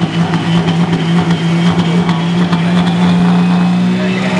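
Pro stock pulling tractor's turbocharged diesel engine revved and held at high rpm on the starting line, one steady pitch, before it launches the pull.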